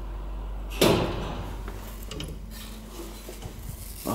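Old single-speed traction elevator arriving at the landing: a loud mechanical clunk about a second in, then the hinged wooden landing door being pulled open with lighter clatter.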